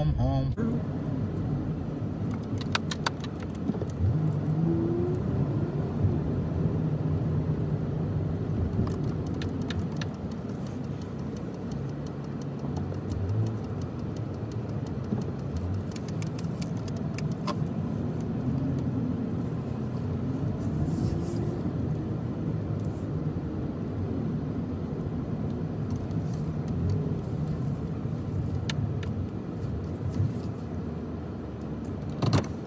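Steady low rumble of road and engine noise inside a car being driven, with a few faint clicks here and there.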